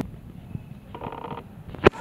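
Low room tone with a faint tap, then a single sharp click near the end as a glass door is pulled open by its metal pull handle.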